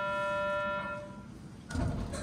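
A single steady buzzer or horn tone, held for a bit over a second and then fading: the signal sounded at a ropeway station before the gondola departs. Near the end comes a low rumbling thump as the car begins to move.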